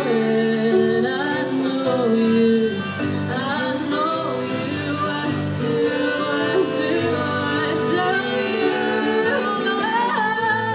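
Live acoustic folk band playing: a woman singing a wavering melody over acoustic guitar, harp, cello and violin.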